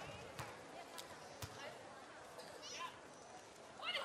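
A volleyball being struck by hand: three sharp smacks within the first second and a half, over a faint murmur of crowd voices.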